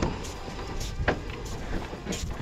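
A few light knocks and taps around the wooden body of a cattle truck as a rope is handled at its rear, over a steady low rumble of outdoor noise.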